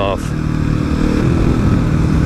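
Kawasaki KLX250SF's single-cylinder engine running at a steady cruise.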